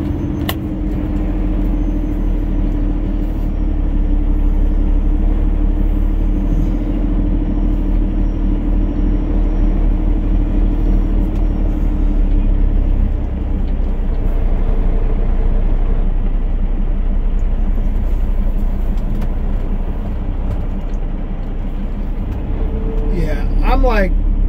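Peterbilt 389 semi truck's diesel engine running slowly and idling, heard from inside the cab as a steady low drone.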